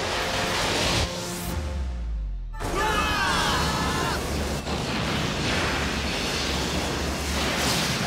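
Cartoon power-up sound effects over music: a rush of energy, then about 1.5 s in a low rumble with the highs cut away. About 2.7 s in a burst returns the full sound, with falling whistling tones, and a dense rush of energy effects continues.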